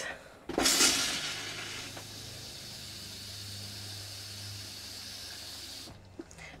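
RV toilet being flushed, its valve held open as pink RV antifreeze is drawn through the line into the bowl. A sudden rush of water about half a second in settles into a steady hiss, with a low hum from the water pump underneath, and stops just before the end.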